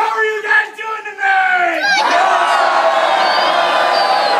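A long shouted call from one voice, its pitch sliding down, then about two seconds in a large crowd of scouts answers with a loud, sustained yell together.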